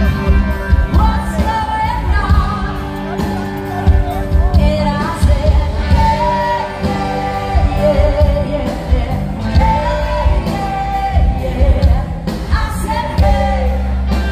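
Live band playing a pop-rock song through a large outdoor PA, with a singer's melody over heavy bass and a steady drum beat.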